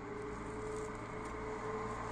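Faint steady outdoor background: a low rumble with a thin steady hum that fades out near the end.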